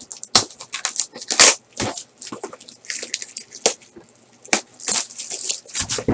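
Plastic shrink-wrap crinkling and tearing as a sealed cardboard trading-card box is unwrapped and opened by hand. The sound is a run of irregular sharp crackles and rustles, with a few louder snaps.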